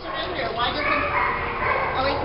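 Pit bull–type dog whining in high-pitched whimpers, eager while made to sit for a treat.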